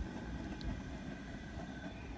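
Propane turkey-fryer burner running under a pot of hot dye water, a steady low rumble.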